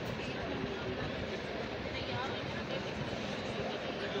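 Busy shop background: indistinct voices over a steady rumbling din.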